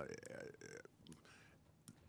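A man's drawn-out hesitation 'uhh' into a desk microphone for nearly a second, then near silence with room tone and a single faint click near the end.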